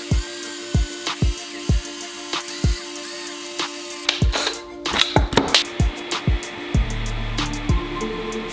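Background music with a steady beat. Under it, a cordless drill driving the screw of a paste extruder runs for about the first four seconds, its pitch wavering as it forces thick clay out of the nozzle, then stops.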